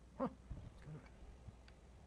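A short squeak with a bending pitch, followed by a few soft low knocks and bumps as lab demo equipment is handled.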